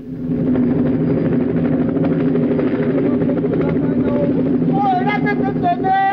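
Aircraft engine running steadily, a low drone with a fast fluttering beat. From about five seconds in, a voice starts singing over it.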